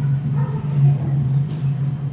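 A steady low hum runs through the room sound, with faint, indistinct voices briefly heard over it.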